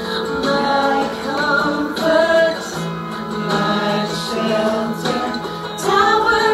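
Two women singing a worship song together into microphones through a PA, over instrumental accompaniment.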